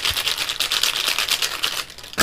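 A bundle of plastic felt-tip sketch pens rattling and clicking against each other as they are rolled between the palms: a fast, even run of small clicks, about a dozen a second, stopping near the end.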